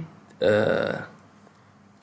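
A man's voice making one drawn-out wordless sound, like a hesitation filler, lasting under a second and starting about half a second in.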